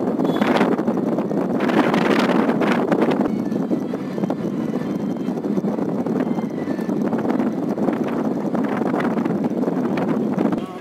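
Road and wind noise heard from inside a moving car, with wind gusting over the microphone, stronger in the first three seconds.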